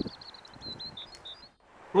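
A small bird chirping in the background: a quick run of short, high chirps during the first second, then it stops.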